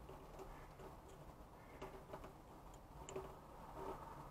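Near silence: faint room tone with a few soft clicks, about three of them scattered through the second half.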